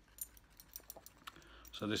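A quick, irregular run of light metallic clicks and taps from a metal pipe tool being handled. A man's voice starts near the end.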